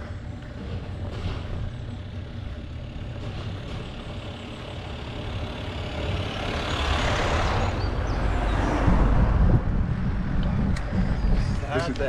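A van driving downhill towards the microphone and passing close by: its tyre noise swells to a peak, then gives way to a deep rumble as it goes past, which is the loudest part. A steady low rumble of wind on the microphone runs underneath.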